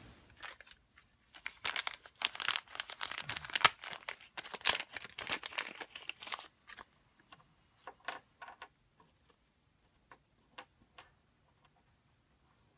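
Old felt wiper being pulled and scraped out of its small steel retainer bracket from an Atlas lathe carriage, a dense run of scratchy tearing and scraping for about five seconds. After that come scattered light clicks as the bracket and its screw are handled on the wooden bench.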